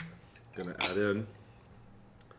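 Clinks of cutlery against glass: a sharp clink at the start and another about a second in, over a brief vocal sound.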